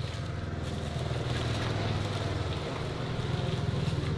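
A small engine idling steadily: a low, even drone.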